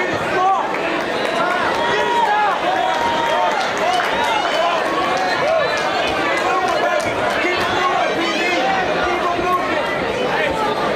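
Boxing-match crowd in a large hall: many spectators talking and shouting at once, a steady wash of overlapping voices.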